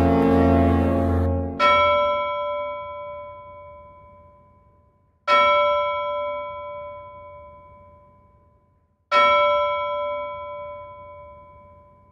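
A deep droning musical tone ends about a second in. Then a large bell tolls three times, about four seconds apart, each stroke ringing out and slowly dying away.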